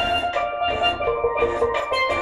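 Steel pan played with sticks: a quick reggae melody of short, ringing metallic notes, over a backing track with a pulsing bass and drum beat underneath.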